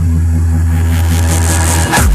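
Darkstep drum-and-bass track: a deep, heavy bass note comes in suddenly and holds steady, while a hiss rises in brightness through the second half, building to the drop.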